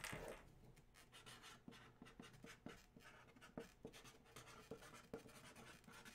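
Near silence, with faint light clicks and scratchy ticks scattered throughout and a soft knock right at the start.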